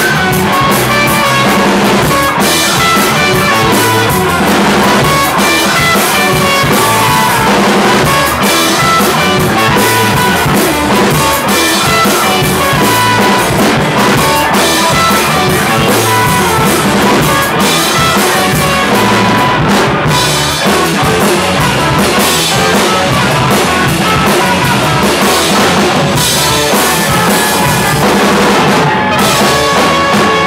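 Live band playing loudly: a trumpet over electric guitar, bass guitar and a drum kit keeping a steady beat.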